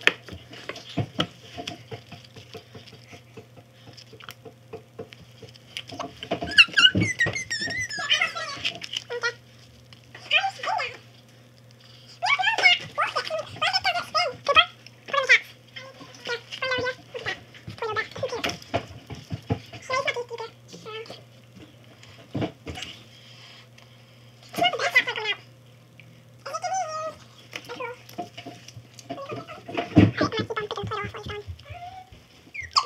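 Indistinct children's voices in short spells, some high and wavering, with small clicks of hands pulling apart Play-Doh between them. A steady low hum runs underneath.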